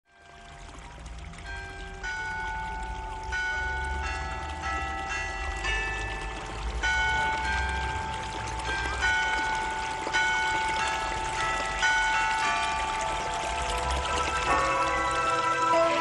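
A slow melody of ringing, bell-like chimed notes, each one hanging on and overlapping the next, over a low steady rumble. It fades in over the first couple of seconds.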